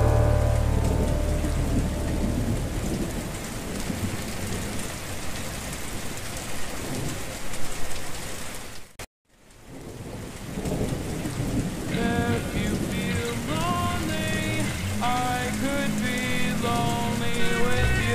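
Steady rain noise as a slowed, reverb-heavy song fades out at the start. About nine seconds in, the sound cuts out briefly, then the rain comes back and a new slowed song with a melody enters from about twelve seconds.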